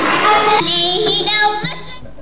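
A young girl singing into a microphone, a held line with wavering pitch starting about half a second in, at first over the chatter of a hall crowd. The singing cuts off shortly before the end.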